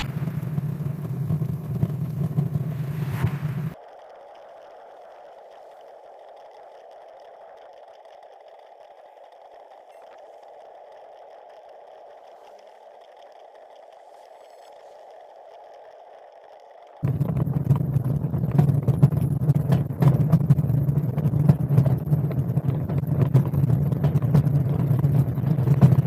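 Rumbling road noise with rattling from a loaded bicycle and trailer riding along an asphalt road. About four seconds in it drops to a much quieter steady hum, and the rumble returns about four-fifths of the way through.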